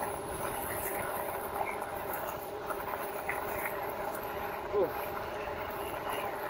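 Steady wind and rolling noise from a RadMini fat-tyre electric bike ridden at about 20 mph on a gravel trail.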